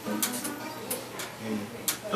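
Quiet acoustic guitar sounds with a few sharp clicks, and a little talk.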